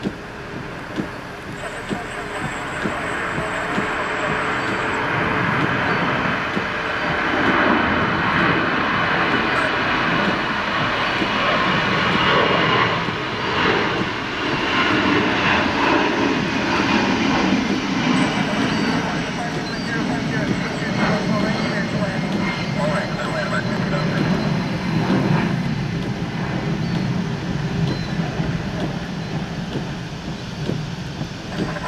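Airbus A340-600's four Rolls-Royce Trent 500 jet engines running as the airliner rolls along the runway, the noise building over the first several seconds and then staying loud.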